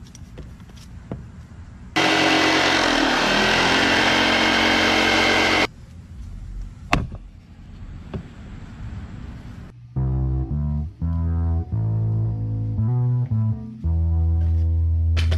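Corded Black+Decker jigsaw running for about four seconds, cutting a wooden board, then stopping, followed by a single knock. About ten seconds in, background music with a heavy, stepped bass line starts.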